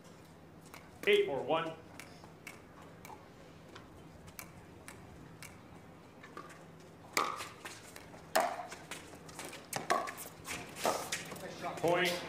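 Pickleball paddles striking the plastic ball in a rally: sharp pops coming about once a second in the second half. A brief voice call sounds about a second in.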